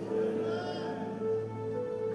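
Soft background music in a pause of the preaching: a sustained chord held steady, with a faint wavering upper tone.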